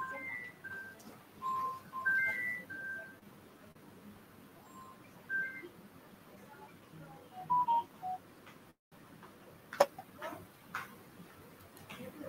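Faint electronic tones: short, clean beeps stepping between a few pitches in little melodic groups, several times over, then two sharp clicks near the end.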